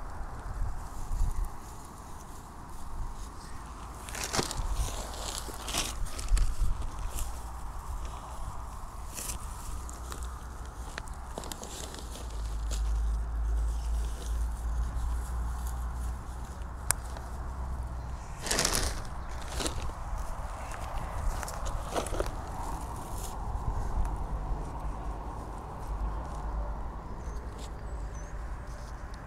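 Hands working loose soil and dry grass while planting a shrub: irregular rustling and scraping as the root ball is set in the hole and earth is pressed down around it, with a few louder rustles.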